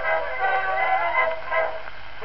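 Short instrumental passage played back from a 1908 Edison four-minute wax cylinder record, several notes held together, stopping near the end.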